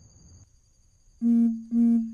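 Two loud beeps of the same low, steady pitch, about half a second apart, the second trailing off.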